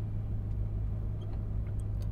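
Steady low drone and rumble of a car heard from inside its cabin, as engine and road noise.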